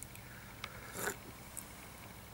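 Quiet sounds of a man sipping coffee from a mug: a short sip about a second in, among a few faint clicks.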